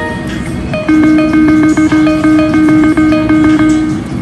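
Video keno machine sounds: a short electronic chime at the start, then, about a second in, a rapid even run of electronic ticks over a steady tone, about six a second, as the balls of a new draw come up. The run stops near the end as the draw finishes.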